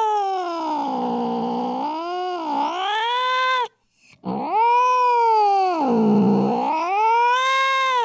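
Tomcat's mating call: two long, drawn-out yowls. Each sags low in pitch in the middle and climbs back up. The first ends a little before halfway and the second follows after a short break.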